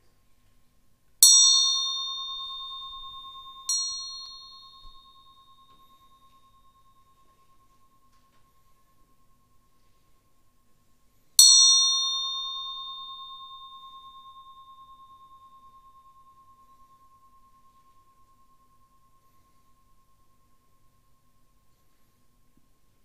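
A small bell struck three times: about a second in, again more softly a couple of seconds later, and once more about ten seconds in. Each strike gives a clear, high ringing tone that fades slowly over several seconds.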